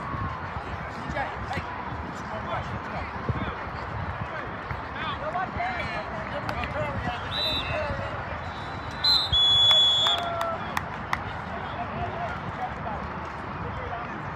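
Distant shouting voices of players, coaches and spectators throughout, with a referee's whistle blown once, about a second long and the loudest sound, a little past the middle, ending the play.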